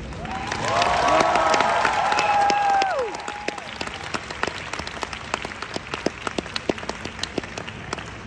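Theatre audience cheering with long held whoops for a few seconds, then applauding, the clapping thinning to scattered claps.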